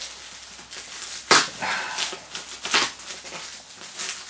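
Plastic packaging and tape being pulled and torn off a parcel: a few short, sharp rips and crinkles, the loudest about a second in.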